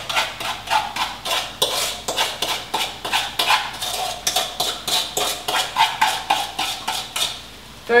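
A spoon rapidly scraping and tapping against a bowl, about four or five strokes a second, as sugar is scraped out into a skillet; the strokes stop near the end.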